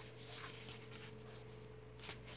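Paper pages of a coloring book being flipped and handled: soft, intermittent rustles and swishes over a faint steady hum.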